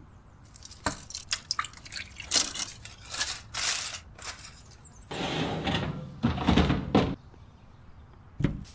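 Kitchen handling sounds: taps and knocks of a loaf pan and baking dish, with aluminium foil crinkling as it is pressed over the pan. A longer, louder stretch of rustling and thumps comes about five to seven seconds in.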